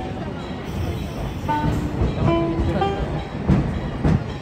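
Theme-park train carriages rumbling along the track, seen from a passenger car, with short melodic notes of background music starting about a second in.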